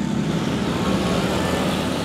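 Street traffic passing close by: a steady wash of engine and tyre noise from cars and motorbikes.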